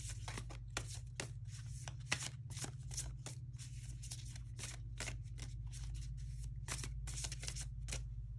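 An Affirmators! affirmation card deck being shuffled by hand, the cards snapping against each other in quick, irregular clicks, several a second.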